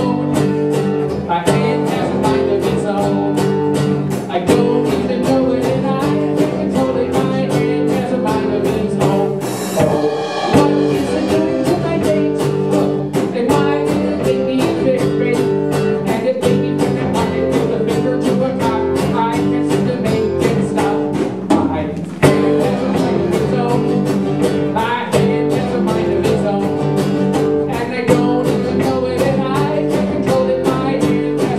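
Live acoustic guitar and drum kit playing a song together: strummed guitar chords over a steady drum beat.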